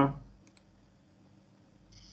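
A few faint computer clicks while an attendance mark is entered in a spreadsheet, over a faint steady low hum.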